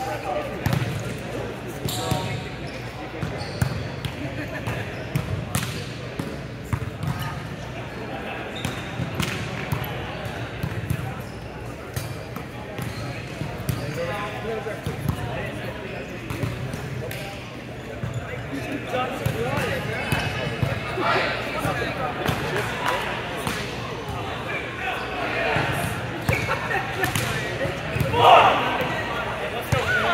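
Indistinct chatter of players and spectators echoing in a large gym hall, with scattered knocks of balls bouncing on the hard court floor, and a louder burst of voices near the end.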